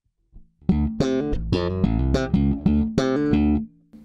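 Electric bass guitar in passive mode, played through an Aguilar TLC Compressor pedal with its threshold control turned up so the notes reach the compressor. A quick run of about ten plucked notes starts just under a second in and stops shortly before the end.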